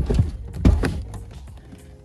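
A BMW E36 coupe door moved on its freshly oiled hinge, giving a loud knock at the start and two more a little under a second in, with no squeak left: the oil has cured the noise it made on opening. Background music plays underneath.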